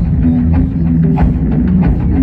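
Loud live band music with deep, held bass notes and a steady drum beat, a strike about every two-thirds of a second.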